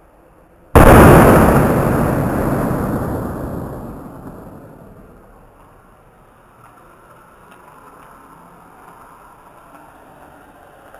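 A block of sodium metal exploding on contact with water: one sudden loud blast about a second in, dying away over about four seconds.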